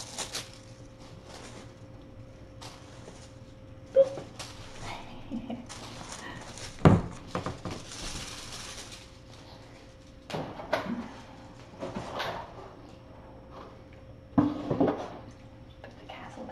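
Kittens pouncing and scampering after a feather wand toy: scattered thumps, knocks and scuffles on the floor and rug, with a sharp knock about seven seconds in the loudest, and a faint steady hum underneath.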